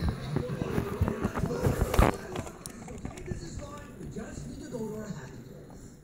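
A run of knocks, clatter and rustling handling noise, with one sharp knock the loudest about two seconds in, then quieter, with faint voices near the end.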